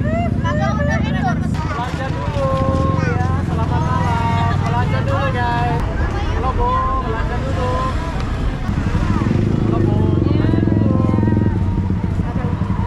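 Street traffic at night: a steady rumble of motorcycle and car engines, with people's voices over it.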